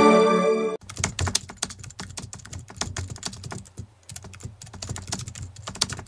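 The final chord of the hymn accompaniment, played on an electronic keyboard in dual-voice mode (strings layered over a lead voice), is held and then cuts off suddenly about a second in. A quieter run of quick, irregular clicks and taps follows.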